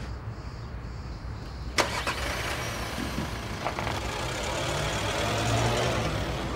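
Car engine running, heard from inside the cabin, with a sharp click about two seconds in; after it the engine and road noise build steadily as the car gets moving.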